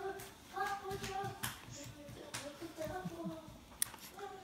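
A high voice makes a few held, hummed notes, each lasting under a second, with several sharp clicks in between while the baby feeds from a bottle.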